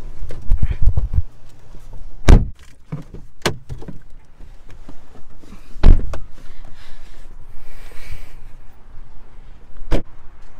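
Thunks and knocks of a car door being opened and shut from inside the car, with rumbling handling noise on the phone's microphone at first. The two loudest thunks come about two and six seconds in.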